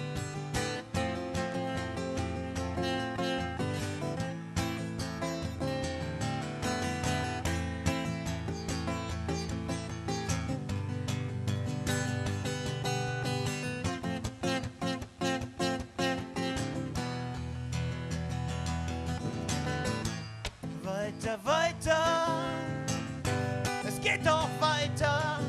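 Steel-string acoustic guitar strummed in a steady rhythm, played live as the instrumental intro to a song. Near the end, a wavering melody line comes in over the strumming.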